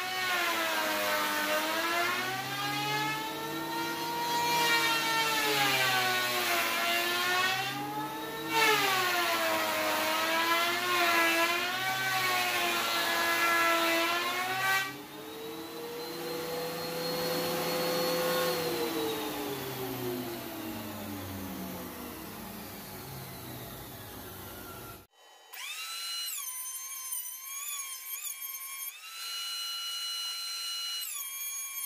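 Ridgid R4330 thickness planer running with a loud motor whine that keeps dipping and recovering in pitch as it takes load while cutting a maple board, then slides slowly up and back down. About 25 seconds in it stops abruptly and a clean, stepped, tune-like sound follows.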